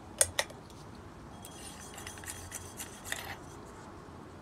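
LED bulb being handled and unscrewed from a ceiling fan light-kit socket: two sharp clicks near the start, then faint scraping and small ticks as the bulb's base turns out of the socket threads.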